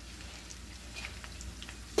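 A pot of chicken macaroni soup simmering quietly on the stove, with faint bubbling and a few soft ticks.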